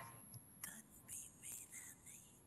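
Near silence in a pause between spoken phrases, with four faint, short whispery hisses spread over the second half.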